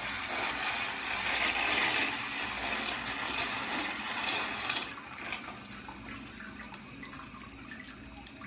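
Water pouring into a bathtub and churning around the feet standing in it. At about five seconds the rush drops off sharply to a quieter trickle with small splashes and drips.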